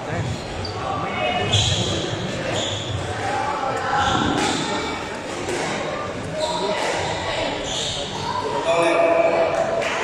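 Squash balls striking court walls, sharp irregular knocks echoing around a large hall, over the chatter of voices.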